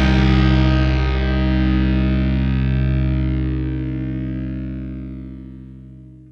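Closing chord of a heavy stoner-rock song: a distorted electric guitar chord left to ring, slowly dying away and fading almost to silence by the end.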